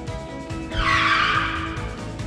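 Background music with a steady beat. About three-quarters of a second in, a loud hissing whoosh sound effect rises over it and fades out after about a second.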